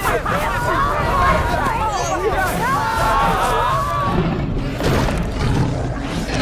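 Several people shouting and yelling over one another. About four seconds in the voices thin out, and heavier low rumbling with a few sharp thuds takes over.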